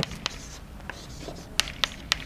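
Chalk writing on a blackboard: a series of sharp taps and short scratches as the chalk strikes and strokes the board, with two louder taps about a second and a half in.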